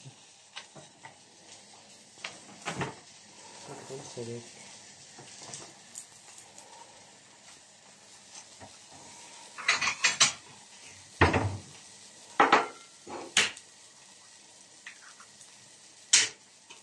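Kitchen clatter of dishes and utensils as an egg is fetched and cracked. Scattered clicks give way to a cluster of loud, sharp knocks and clinks about two-thirds of the way in, over a faint sizzle from the frying pan.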